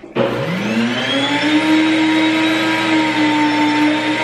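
Electric grain mill switched on, its motor spinning up with a rising whine over the first second, then running with a steady loud whir while grinding wheat into flour.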